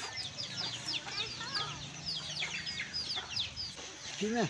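Chickens: a rapid run of short, high, falling chirps, several a second, with a few soft clucks mixed in.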